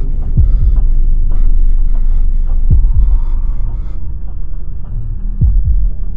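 Suspense soundtrack of a low, steady drone with a heartbeat effect: a heavy double thump roughly every two and a half seconds.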